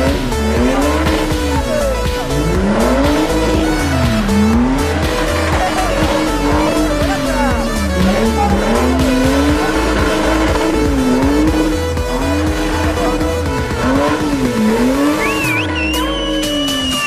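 Engine of a stripped-down buggy revving up and down in repeated swells, about every one and a half to two seconds, with tyres squealing and skidding as it spins doughnuts. Music with a steady beat plays along with it.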